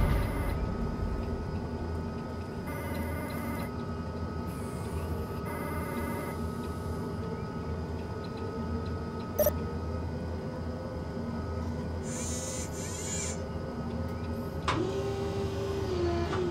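Ambient electronic sound design: a steady low drone with held tones, short stretches of electronic chirping near the start, and one sharp click about halfway through. Near the end a quick sweep leads into a short falling whine.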